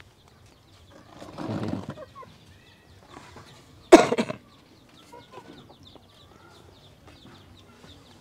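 A chicken calling: a faint call about a second and a half in, then one short, loud squawk about four seconds in.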